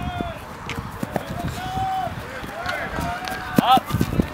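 Players shouting calls across an open playing field, unintelligible at a distance. There is one drawn-out call around the middle and a louder, higher shout near the end.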